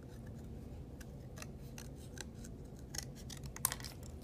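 Scissors snipping thin cardboard: a series of irregular short cuts, the sharpest one near the end.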